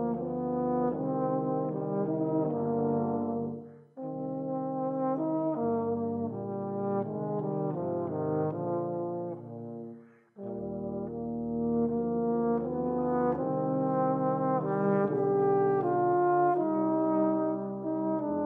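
Outro music played by a brass ensemble: several notes sound together as a moving chord progression, with two short breaks, about four seconds in and just after ten seconds.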